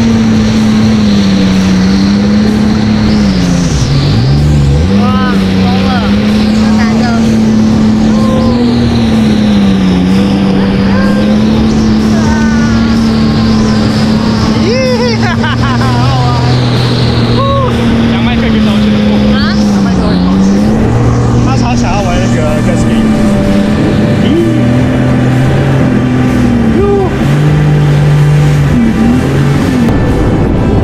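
Jet ski engine running hard under way, its steady drone dipping in pitch several times as the throttle is eased, then climbing back. Wind and water noise run underneath, with riders' whoops and laughter over it.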